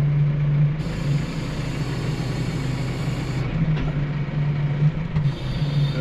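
Tractor diesel engine running, heard from inside the cab, while the front loader's hydraulics tip a round hay bale into a bale ring feeder. A hiss rises over the engine hum about a second in and cuts off after about two and a half seconds.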